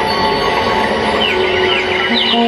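Live stage music for a Chhattisgarhi sad song: held keyboard notes, with quick gliding high notes in the second half.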